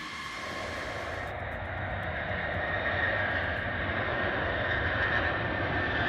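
B-52 Stratofortress's eight turbofan engines at high power as the bomber makes its takeoff roll: a steady jet rush with a faint high whine, growing gradually louder.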